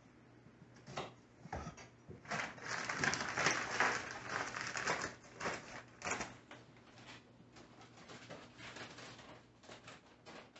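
Dry ingredients being measured out: a dense hiss of granules poured for about two seconds, then a paper sugar bag rustling and crinkling, with light clicks and knocks.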